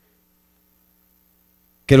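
Faint steady electrical hum from the microphone and sound system during a pause. A man's voice through the microphone starts again just before the end.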